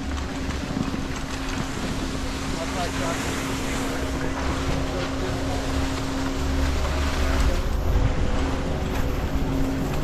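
Skis sliding over packed snow with wind buffeting a helmet-mounted camera microphone, over a steady low hum; the wind rumble grows louder past the middle.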